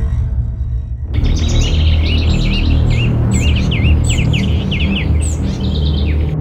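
Songbirds chirping in quick, repeated calls, starting abruptly about a second in over a low, steady music drone: a morning-birdsong cue.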